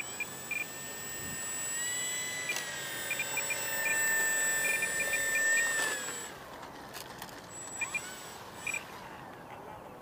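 Electric motor and propeller of a Durafly T-28 V2 RC plane whining as it taxis on the ground. The pitch rises about two seconds in, holds for a few seconds, then winds down and stops about six seconds in as the throttle is cut.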